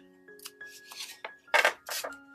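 Small scissors snipping through folded paper to cut off a corner: a soft crisp cut about halfway in, then two short, sharp snips near the end.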